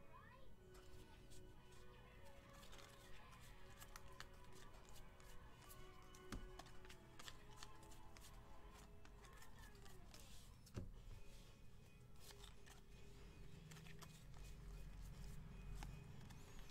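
Very faint background music, near silence, with scattered soft clicks from trading cards being flipped through by hand.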